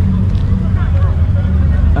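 A car engine idling nearby as a steady low drone, with voices murmuring faintly over it.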